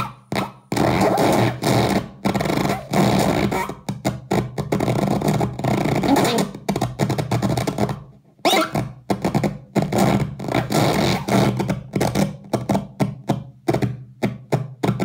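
A circuit-bent talking toy putting out harsh, glitchy electronic noise, rapidly chopped and stuttering over a steady low drone, as its buttons and knobs are played. The sound cuts out briefly about eight seconds in, then comes back.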